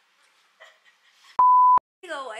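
A loud single-pitch electronic bleep, a censor-style beep edited into the soundtrack, lasting under half a second about one and a half seconds in, with a click where it starts and where it stops. Faint small sounds come before it.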